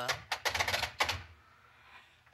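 A quick run of clicks and clatter from an old telephone being handled, the handset lifted and the hook switch clicked, on a line that is dead. The clicking stops a little past a second in.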